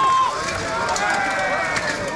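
People shouting in long, held yells during an armoured medieval melee, with a few sharp clanks of weapons striking armour.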